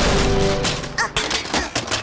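Cartoon crash sound effects: a sudden smash, then a rapid run of sharp clattering impacts as a car is knocked over and tumbles. A held music chord ends about half a second in, and a brief wavering squeal sounds about a second in.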